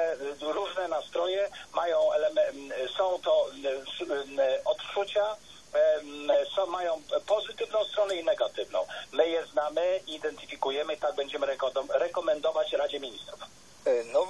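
Continuous speech with a thin, narrowband sound cut off above about 4 kHz, like a voice heard over a radio or telephone line.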